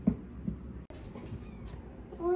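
Young kitten giving two short mews in the first half-second.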